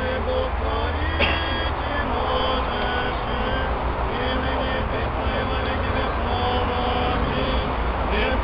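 A crowd of worshippers singing a church chant together, held notes stepping from one pitch to the next, over a steady low rumble. A short click about a second in.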